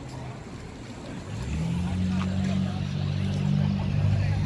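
A motor vehicle's engine running close by. A low, steady hum comes up about a second in and holds.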